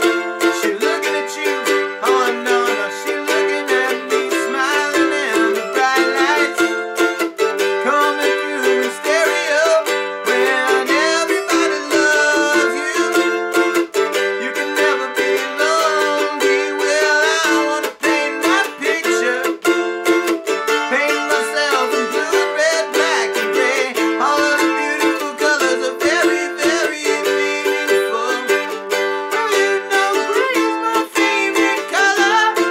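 An F-style mandolin strummed in a steady rhythm through a chord progression in C major (C, F and G).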